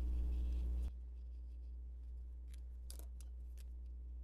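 A few faint, short plastic clicks of a Zig Real Brush marker's cap being pulled off and handled, the clearest about three seconds in. Before them a low hum drops away suddenly about a second in.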